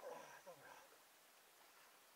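A short burst of a person's voice in the first second, then near silence.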